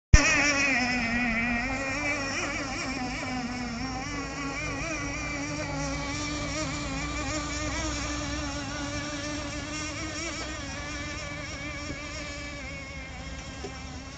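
RC boat's 3.5 cc nitro engine running at high revs, a steady note that wavers slightly in pitch and slowly grows fainter as the boat draws away.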